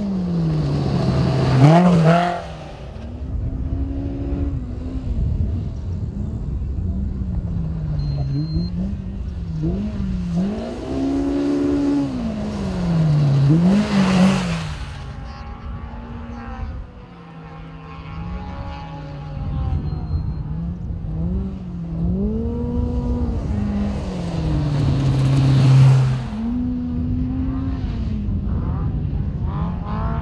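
Off-road race UTV engines running at high revs as they pass close by, the pitch sweeping up and down with throttle and gear changes. The loudest pass comes about two seconds in, another around fourteen seconds, and a third vehicle builds to a peak around twenty-six seconds.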